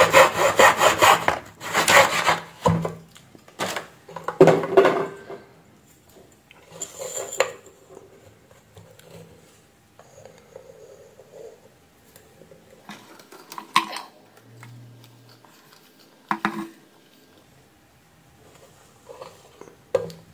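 Wooden parts rubbing and scraping on a plywood board as a model barrier boom and motor assembly are handled. There is a run of quick scrapes in the first five seconds, then a few short scrapes and knocks.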